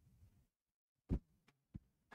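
Near silence, broken by a brief soft knock about a second in and two fainter clicks after it.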